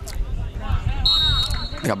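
Referee's whistle, one steady blast of just under a second about a second in, signalling the free kick to be taken, over faint distant shouts on the pitch.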